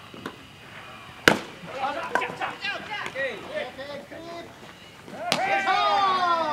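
A baseball bat hits a pitched ball with one sharp crack about a second in. Players' shouts and calls follow. Near the end there is a second, softer knock, then louder shouting.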